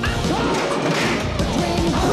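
Movie-trailer soundtrack: music with a sudden crash-like sound effect hitting as the title card appears.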